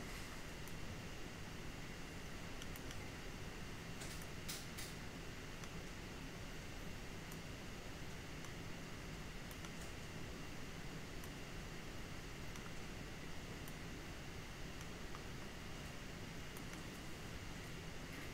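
Quiet room tone, a steady hum and hiss, with a few faint computer-mouse clicks about four seconds in.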